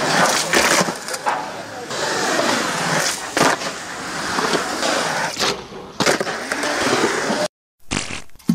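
Skateboard wheels rolling on a concrete skatepark surface, broken by several sharp clacks of the board hitting the concrete, about six over the stretch. The sound stops abruptly just before the end.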